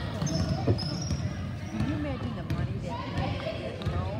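A basketball being dribbled on a hardwood gym floor, a string of short bounces, with spectators' and players' voices in the gym. There are a couple of brief high squeaks in the first second.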